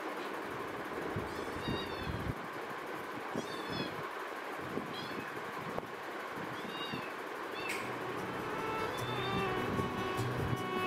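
A kitten mewing: about five short, high calls that rise and fall, spaced a second or more apart, over a steady background hiss. There is one sharp click about three quarters of the way through.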